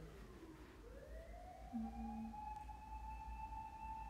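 A faint siren wailing: its pitch rises slowly about a second in, then holds a long steady high note.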